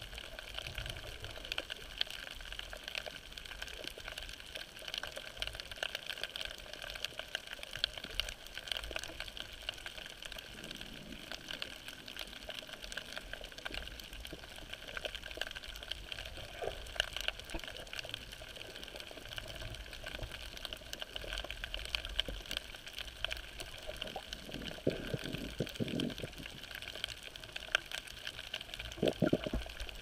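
Underwater ambience picked up by a camera held below the surface: a steady, muffled water noise with many faint scattered clicks. A few short, louder bursts come near the end.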